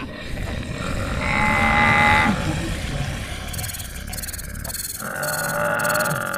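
Animal call sound effects: two held, pitched calls about a second long, one near the start and one near the end, over a low rumbling of moving animals, with a high pulsing chatter joining about halfway through.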